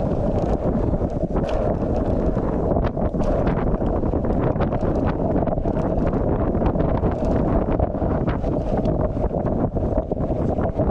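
Wind buffeting the microphone of a camera moving at speed, a steady heavy rumble with frequent short clatters and rattles throughout.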